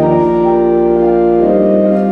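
Church organ playing sustained full chords over a held pedal bass, the harmony moving on every half second or so.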